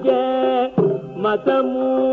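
Carnatic vocal music: a male voice singing long held notes, briefly dipping about a second in.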